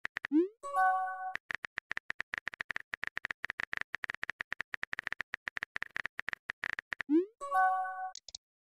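Rapid, continuous keyboard-typing clicks from a texting sound effect. Twice they stop for a short rising swoop followed by a brief chime, the sent-message sound as a new text bubble appears.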